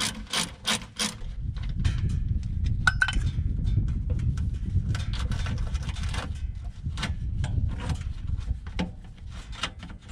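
A socket ratchet clicking in a quick run of strokes for about the first second as a skid-plate bolt is backed out. Then a low rumble with scattered small clicks and rubbing as the loosened bolt and access panel are worked by hand.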